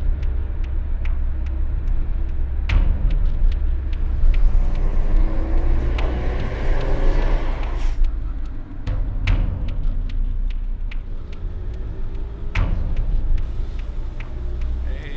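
Car driving, heard from inside the cabin: a steady low engine and road rumble, with a few sharp knocks along the way.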